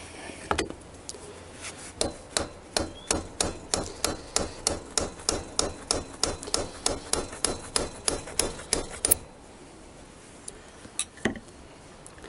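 Hammer tapping a small chisel against a seized, corroded float-bowl screw on a Kawasaki ZX-6R carburettor bank to start the screw turning: a quick, even run of sharp metallic taps, about three a second, that stops about nine seconds in, with one more tap near the end.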